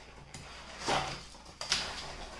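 Cardboard sliding and scraping as a cardboard sleeve is pulled along and off a paper-wrapped tube in a long shipping box, in two rustling swells: one about a second in, another near the end.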